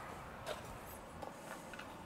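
Quiet room tone with a few faint, light footsteps on a concrete floor, spaced unevenly across the two seconds.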